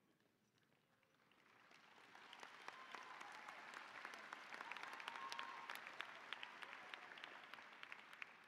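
Audience applauding, faint and distant. It swells from near silence about a second in, holds through the middle and fades toward the end.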